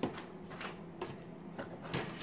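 Handling noises on a tabletop: several light, irregular clicks and knocks with faint rustling as a curling iron is put down and a heat-resistant styling glove is picked up.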